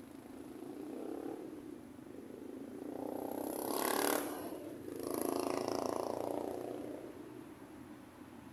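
City road traffic passing: vehicle noise swells up to a peak with a brief hiss about four seconds in, then a second vehicle passes and fades away.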